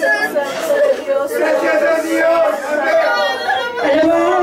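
A woman's voice amplified through a microphone, praying aloud with emotion as she weeps; the words are not clear.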